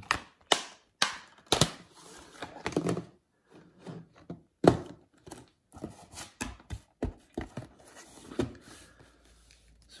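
Plastic Blu-ray cases being handled: a case snapping shut, then a string of clicks, knocks and scrapes as the cases are stacked and slid into a cardboard box-set sleeve, with the loudest knock a little before halfway through.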